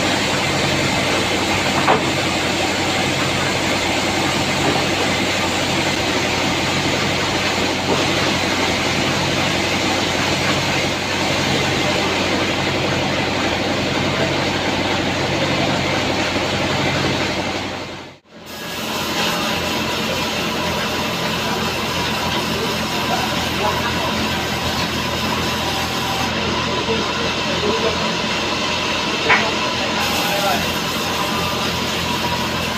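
Sawmill band saw and its machinery running, a loud steady mechanical din with a low hum that pulses about once a second. The sound cuts out for a moment about two-thirds of the way through, then the same din resumes.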